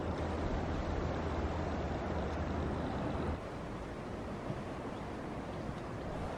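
Steady outdoor background noise with a low rumble that stops suddenly about three seconds in, leaving a quieter, even hiss.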